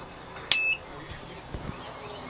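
A click and one short electronic beep about half a second in, as the Xantrex ProWatt SW inverter is switched back on to put the bar onto solar power. A soft thump follows about a second later.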